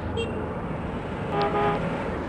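Road-traffic sound effect of a vehicle passing with a low engine rumble, and a short horn toot about one and a half seconds in.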